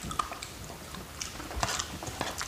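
Close-miked chewing of soft food, cooked buckwheat with sardines, with small wet mouth clicks that get busier near the end.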